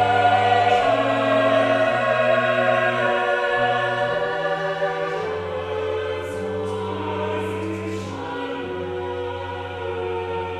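Church choir singing in harmony with long held chords, growing gradually softer, with the hiss of sung 's' consonants in the later part.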